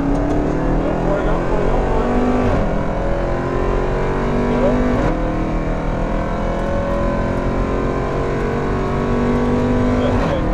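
Jeep Grand Cherokee Trackhawk's supercharged 6.2-litre V8 at full throttle on a drag-strip pass, heard from inside the cabin. The pitch climbs through each gear, with upshifts about two and a half and five seconds in and another at the very end.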